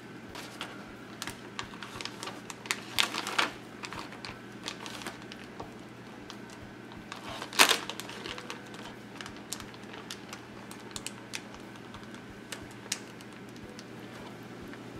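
Clear plastic zip-top bag being handled, crinkling with scattered sharp clicks and crackles as its zipper is worked; the loudest crackle comes about seven and a half seconds in.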